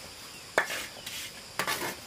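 Steel trowel scraping wet cement mortar across a concrete slab, two short strokes about a second apart.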